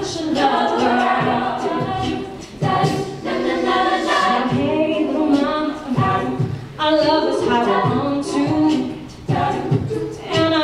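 All-female a cappella group singing: a soloist's voice over the group's layered vocal harmonies.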